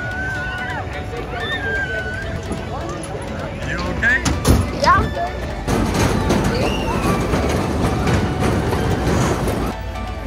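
Busy fairground sound: voices and children's calls over music, with a few short rising calls about four to five seconds in. From about six seconds in it turns into a denser, louder wash of crowd and ride noise.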